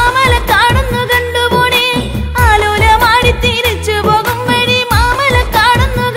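A Malayalam folk song (nadanpattu) with a solo singer's wavering, ornamented melody over a steady drum beat and bass.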